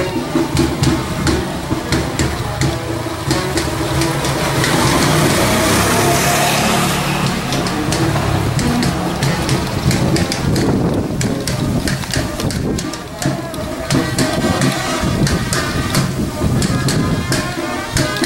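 Procession dance music with a regular percussive beat, mixed with voices of the crowd and dancers. A motorcycle engine rises over it from about four to eight seconds in, then the beat comes back clearly.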